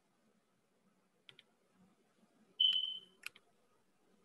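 Faint computer mouse clicks as a screen share is started, with a short high tone about two-thirds of the way through, followed by another click.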